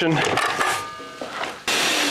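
A workshop vacuum hooked to a mitre saw's dust port switches on suddenly near the end, running with a loud, steady rushing noise as it pulls air through the hose.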